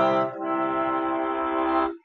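Bayan (chromatic button accordion) holding chords. A first chord changes to a second about a third of a second in; the second is held steadily and cut off just before the end. It sounds out the key of C major that has just been named.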